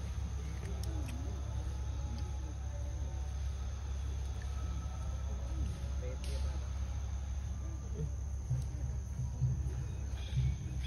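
A steady low rumble with faint, indistinct voices in the background.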